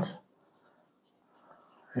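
Marker pen writing a word on a whiteboard, faint.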